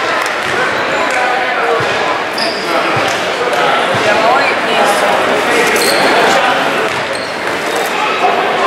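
Spectators chattering in a school gym, with a basketball bouncing a few times on the hardwood floor as it is handed to the free-throw shooter.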